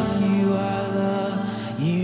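Live worship band music in a slow passage of long, held notes, with a new note sliding up into place near the end.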